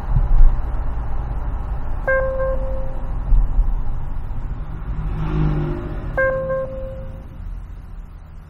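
Thinkware U3000 dash cam's radar proximity alert beeping twice, about four seconds apart, warning that a vehicle is close. Steady road and engine noise from inside the car's cabin runs underneath.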